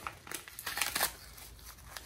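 Yellow padded mailer envelope crinkling as it is pulled open by hand: a run of irregular crackles, densest in the first second, then fainter.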